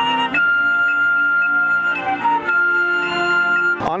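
Marching band flutes playing long sustained notes over other wind instruments: one long held note, a brief change of pitch about halfway, then another long held note that cuts off suddenly near the end.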